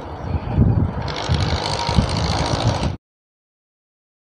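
Motorcycle riding along a street: engine and road noise, louder from about a second in, cut off suddenly near the end.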